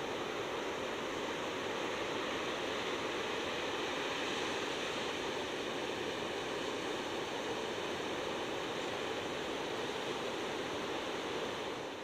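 Ocean surf breaking along a beach, heard as a steady, even wash with no single wave crash standing out.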